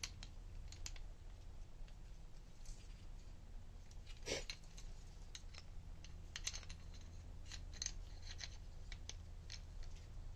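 Plastic parts of a toy foam-dart blaster's spring-loaded bipod clicking and rattling as they are handled and fitted, scattered small clicks with a louder knock about four seconds in, over a faint steady hum.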